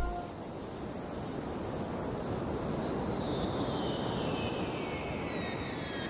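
A steady rushing noise, like wind, with a high whistle that slides slowly down in pitch.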